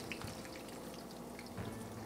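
Raw potato slices sizzling faintly in hot extra virgin olive oil in a fry pan, just after going in.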